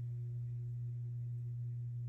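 A steady low hum, one unchanging tone with nothing else over it.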